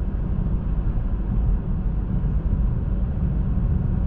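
Steady road and tyre noise heard inside a moving car's cabin: a low rumble with a hiss above it.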